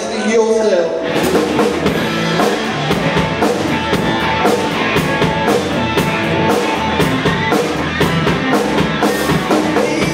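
Live rock band playing a full-band instrumental passage: distorted electric guitar, bass and a drum kit with cymbal crashes. The drums and cymbals come in hard about a second in and keep a driving, steady beat.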